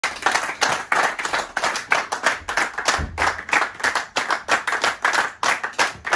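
A small group of people clapping their hands together in steady rhythm, about three claps a second, with a brief low thud about halfway through.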